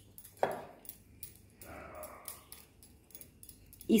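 Stone pestle knocking once sharply against a stone mortar, then a few light ticks and faint scraping as it is rubbed round to wash ground saffron out with milk.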